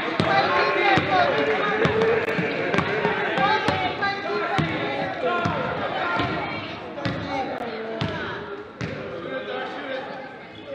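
A basketball bouncing on a hardwood gym floor about once a second as it is dribbled, over players' and spectators' voices echoing in the gym.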